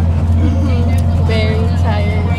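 Bus engine and road noise drone steadily inside the passenger cabin, with voices over it in the second half.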